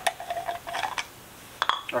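Light hard-plastic clicks and knocks from white PVC pipe fittings being handled and turned in the hands, a few scattered taps with a pair close together near the end.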